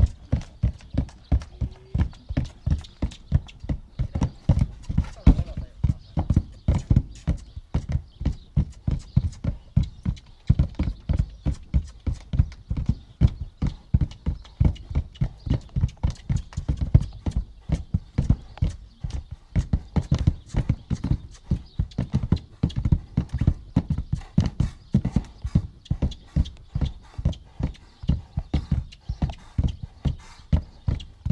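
A Spanish dancing horse stamping its hooves in place on a plank platform, a fast, even run of knocks about three to four a second. It is the basic dance step being drilled in the training stall.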